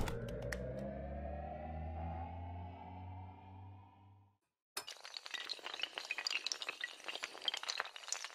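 Animated-intro sound effects: a rising tone over a low hum, with a few clicks near the start, fades away about four seconds in. After a brief silence comes a dense clatter of many small hard pieces tumbling against each other, like toppling dominoes or falling tiles.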